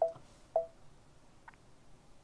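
Brother embroidery machine's touchscreen giving two short beeps about half a second apart as OK is pressed, then a fainter, higher blip about a second and a half in.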